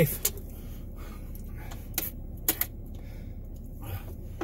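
A few short, sharp clicks and taps inside a vehicle cab over a steady low rumble: one just after the start, one about two seconds in, and two close together soon after.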